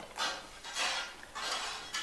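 Eating sounds: a man chewing a forkful of rice with the fork on a ceramic plate, making about four short soft scraping or chewing noises about half a second apart.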